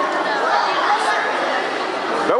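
Indistinct chatter of many people talking at once in a sports hall, no single voice standing out.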